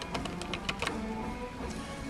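Double-edge safety razor (Merkur travel razor with a Feather blade) scraping through two-day stubble: a quick run of scratchy clicks in the first second, fading after. Soft background music runs underneath.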